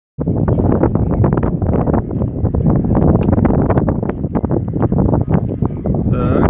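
Strong wind buffeting a phone's microphone: a loud, continuous low rumble with rapid crackling gusts.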